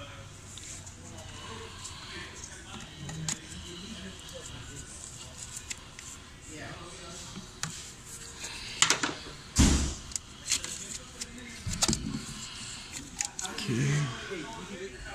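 Scattered clicks and knocks of hands working at a Jeep Wrangler's ABS module and its plastic harness connector, with a few louder thumps in the second half.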